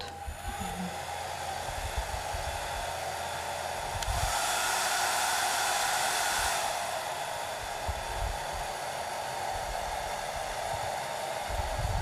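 Hand-held hair dryer blowing steadily, drying a glued decoupage motif; it gets louder for a couple of seconds in the middle of the stretch before settling back.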